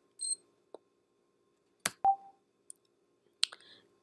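A few separate sharp clicks and one short beep about two seconds in: button presses while moving through an on-screen menu.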